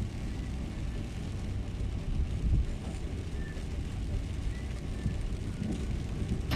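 Car driving on a rain-wet road, heard from inside the cabin: a steady low road and engine rumble.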